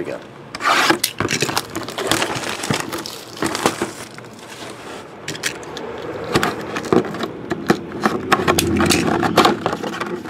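Hands unsealing and opening a cardboard trading-card box, with irregular crinkling, tearing and scraping of the wrapper, seal and cardboard. Near the end comes a longer rubbing scrape as the lid is worked loose.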